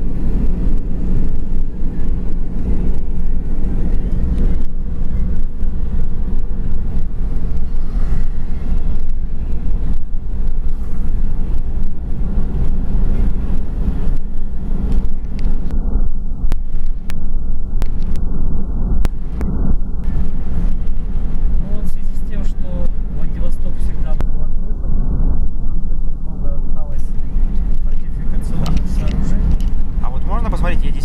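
Steady low rumble of a car's road and engine noise heard from inside the cabin while driving at highway speed.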